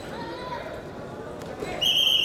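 Referee's whistle: one short, shrill blast of about half a second, starting near the end and stopping the action, over a hall murmuring with voices.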